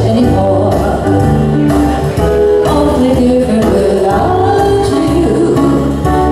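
Live duo performing a song: a singing voice over an electronic keyboard and a guitar, steady and continuous.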